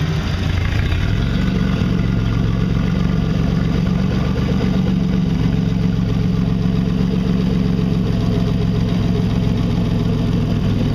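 Turbocharged Nissan VQ35HR 3.5-litre V6 idling steadily and smoothly on its first run after the swap, settling about a second in.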